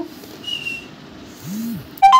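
A short high whistle, falling slightly in pitch, about half a second in, followed near the end by a brief low hum that rises and falls.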